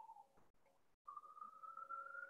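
Near silence in a pause between speech on a video call. A faint thin tone runs underneath; it cuts out for a moment and comes back slowly rising in pitch.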